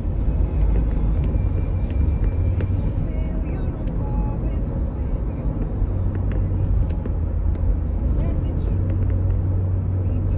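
Car driving, heard from inside the cabin: a steady low rumble of road and engine noise.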